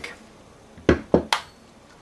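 Three sharp clicks and knocks in quick succession about a second in, from metal tools or bike parts being handled on the workbench.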